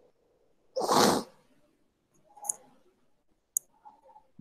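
A man sneezes once, loudly and briefly, about a second in. A faint short sound follows, then a sharp click near the end.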